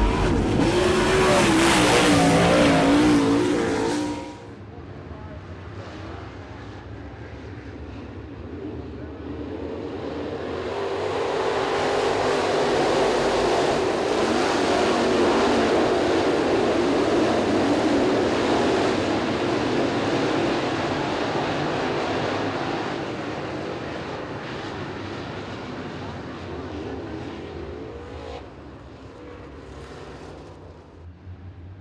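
A short intro jingle with a whoosh, cut off about four seconds in. It is followed by a field of dirt-track crate late model race cars running their V8 engines at speed. The engine noise builds from about ten seconds in, is loudest in the middle, and fades over the last few seconds.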